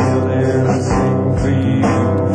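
Live band playing a slow instrumental passage: strummed guitar chords ringing over sustained tones.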